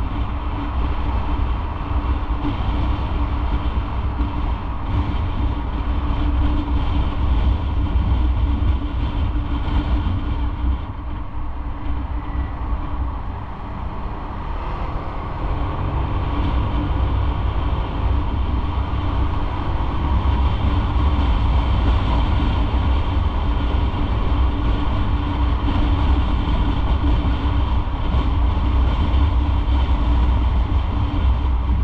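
Motorcycle on the move through city traffic: a steady engine and wind rumble, heaviest in the low end. It eases off for a few seconds a little before halfway, then builds back up.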